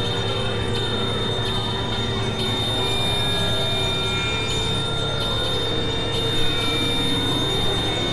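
Dense experimental noise-and-drone collage of several tracks layered at once: a steady high whistling tone over a thick low drone, with pitches sliding slowly up and down through the mix at a constant loudness.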